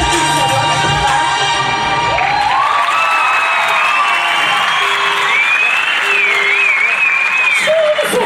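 A song with a steady beat ends about two seconds in, giving way to an audience applauding and cheering, with high wavering shouts rising above the clapping.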